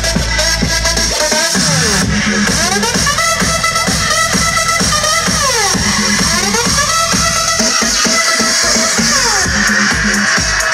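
Electronic dance music played loud through a festival sound system during a live DJ set. Synth lines sweep up and down in pitch, and the deep bass drops out a little over a second in, as in a breakdown.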